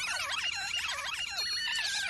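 A group of mice squeaking and chittering, many high-pitched squeaks overlapping at once, as a sound effect.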